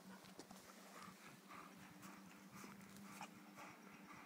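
Irish Wolfhound panting faintly, a steady rhythm of about two breaths a second.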